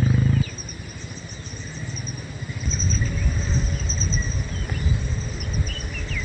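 Outdoor farmland ambience: thin, high-pitched chirping of wildlife over an irregular low rumble that grows louder about three seconds in. A loud, low, steady hum cuts off abruptly about half a second in.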